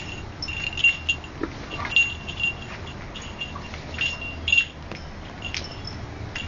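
A small bell jingling in short rings, again and again, as a cat plays and paws, with sharp clicks and taps among the rings.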